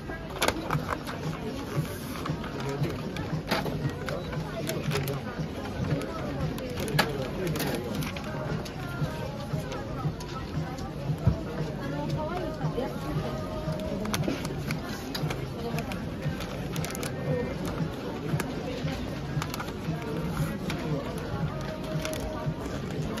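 Wrapping paper being handled, folded and creased around a gift box: crisp rustles and sharp taps, the loudest about halfway through, over background voices and music.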